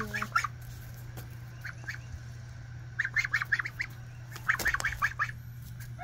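Young white domestic ducks calling with short, quick quacks, a few single notes and then quick runs of several notes about three seconds in and again near five seconds, over a steady low hum.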